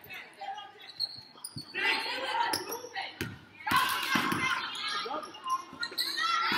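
A basketball bouncing on a hardwood gym floor during play, a few irregularly spaced thuds, with spectators' voices in a large echoing hall.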